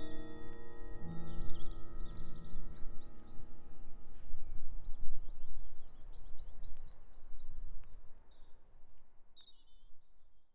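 A contemporary chamber piece with chiming mallet percussion ends over the first few seconds. A songbird sings in repeated phrases of quick high chirps, about three a second, over a low outdoor background noise that fades near the end.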